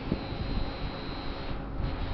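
Stadler FLIRT electric multiple unit rolling slowly into the station on its arrival: a steady low rumble of wheels on rail with a faint, steady high whine.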